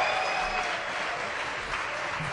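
Concert audience applauding, the clapping slowly dying down.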